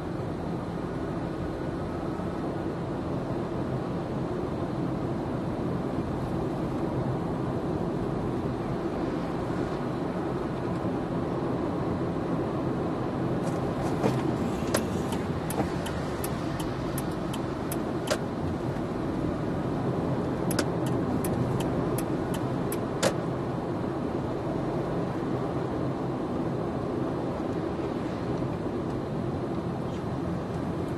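Car driving in city traffic, heard from inside the cabin: a steady rumble of engine and road noise. Around the middle come two short runs of sharp ticks, about three a second.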